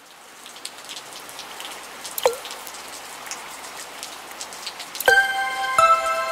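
Rain sound effect swelling in, an even patter with scattered drop ticks and one falling water-drop plop about two seconds in. About five seconds in, bright pitched music notes start over the rain.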